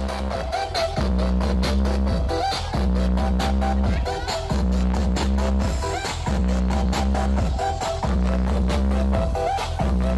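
Indonesian "DJ pong-pong" electronic dance remix played loud through a portable mini sound system, with a quick, steady beat and a heavy bass line repeating in phrases about every two seconds.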